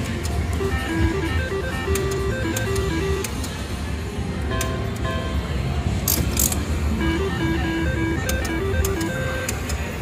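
Casino floor din: slot machines playing short electronic jingles of stepped beeping tones over a low steady hum, with scattered clicks.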